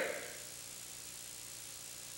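Steady background hiss with a faint hum and no distinct event: room tone between spoken phrases, with the tail of a word at the very start.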